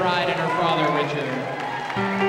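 Indistinct speech: a voice talking that cannot be made out, with faint crowd noise.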